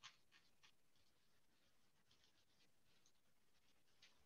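Near silence: room tone with faint, irregular soft clicks, a few per second, bunched near the start and again about halfway through.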